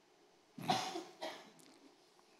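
Two short coughs, a stronger one about half a second in and a weaker one a moment later.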